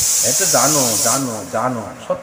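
A man's voice with smoothly rising and falling pitch, over a loud steady hiss that cuts off suddenly a little past halfway.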